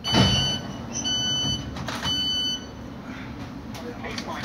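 Three identical high electronic beeps, about a second apart, from a Thameslink Class 700 train's on-board system, over the low running rumble of the train. A thump comes with the first beep.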